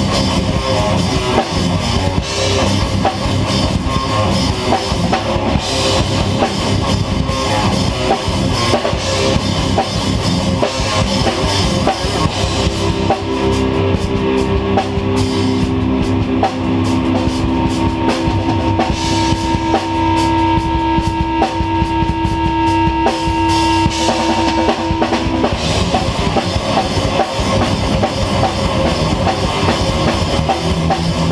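A live rock band playing loud: drum kit and electric guitars. From about twelve seconds in, long held notes ring out for over ten seconds while the cymbal wash thins, then the full band comes back in.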